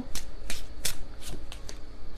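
A deck of tarot cards being shuffled by hand: an irregular run of quick, crisp card clicks and riffles.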